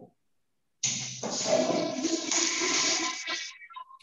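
A public-restroom toilet flushing, heard through a phone on a video call: a rush of water starts about a second in, runs for a couple of seconds and dies away near the end.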